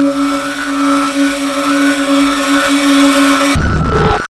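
A loud, steady electronic drone under the channel logo: a held low hum with fainter higher tones and a hiss on top. It cuts off suddenly about three and a half seconds in, and a short, rougher burst of noise follows.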